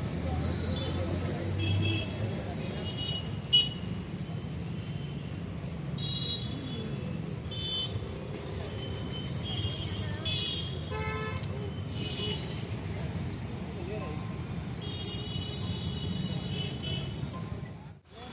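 Roadside traffic: a steady rumble of passing vehicles with many short horn honks scattered throughout, and a sharp knock about three and a half seconds in.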